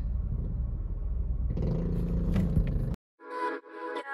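Low, steady rumble of a car heard from inside the cabin, growing a little fuller about halfway through. It cuts off suddenly about three seconds in, and music with held tones starts.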